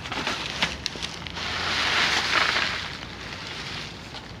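Plastic bags and plastic wrap rustling and crinkling as hands dig through a dumpster's rubbish, with small crackles throughout and a louder stretch of rustling in the middle.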